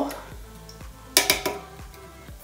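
A tin can knocking against a ceramic mixing bowl as canned whole peeled tomatoes are emptied into it: a short clatter of a few quick knocks a little over a second in, over soft background music.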